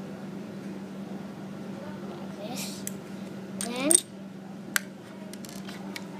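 Plastic Lego pieces being handled and fitted together: small clicks and taps, with one sharp click a little before five seconds and lighter ones after it, over a steady low hum. A short rising sound, the loudest moment, comes just before four seconds in.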